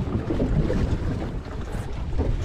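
Wind buffeting the microphone with a low, uneven rumble, over waves washing against a boat's hull on open water.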